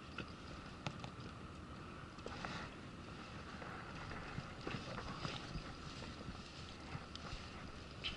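Wind on the microphone and water lapping at a small inflatable boat, with scattered light ticks and knocks.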